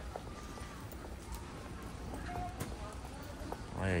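Shopping cart rolling over a concrete warehouse floor, a steady low rumble with light rattling clicks from its wheels and frame.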